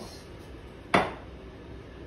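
A single sharp clack of a kitchen item knocking down onto the counter about a second in, with a short ring dying away after it.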